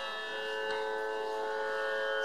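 Harmonium holding steady notes in raga Charukeshi, with one light tabla stroke about a third of the way in.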